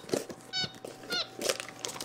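A white-faced capuchin monkey giving about three short, high-pitched chirps, calls that ask for a treat being offered.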